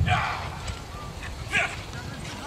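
A dog barking: two short barks about a second and a half apart, over faint crowd chatter.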